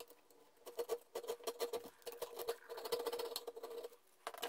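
Flat metal file rasping on a laminated wooden knife handle held in a vise, in quick repeated scratchy strokes that start just under a second in.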